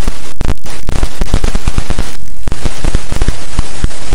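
Very loud, harsh crackling noise, dense with irregular pops and snaps, cutting out briefly a few times: a noise sound effect over the intro logo card.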